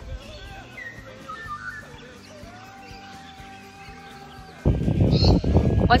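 Quiet background of birds chirping over soft music. About four and a half seconds in, a sudden loud rush of low noise cuts in.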